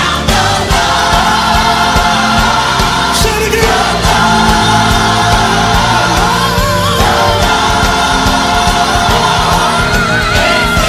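Gospel choir singing long held chords over a steady bass line. A single voice winds above the chord a little past the middle and again near the end.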